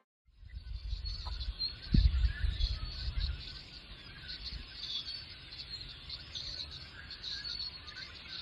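Outdoor ambience: many small birds chirping over an uneven low rumble, with one heavy low thud about two seconds in.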